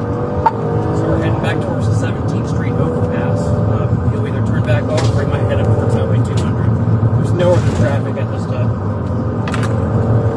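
Patrol car's engine and road noise, a steady low rumble from inside the cabin while it drives at speed in pursuit.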